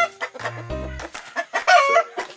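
Game-breed chickens clucking and squawking, with one loud, short squawk near the end.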